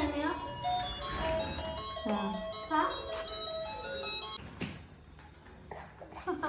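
A tinny electronic jingle plays with a child's voice over it, and it fades down near the end.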